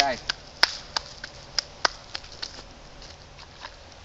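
A string of faint, sharp clicks, roughly three a second, over a quiet outdoor background.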